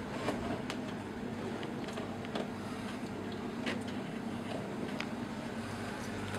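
Steady low mechanical hum with a few brief faint clicks over it.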